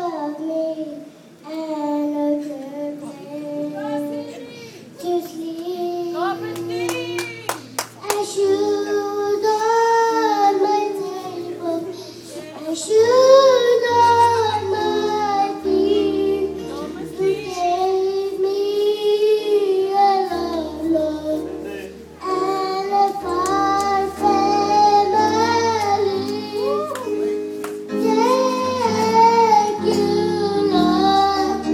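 A young girl singing a song through a microphone, with keyboard accompaniment of sustained bass notes and chords.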